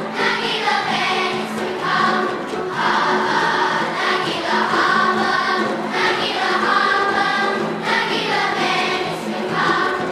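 Elementary school children's choir singing together in phrases of a second or two, with short breaks between them.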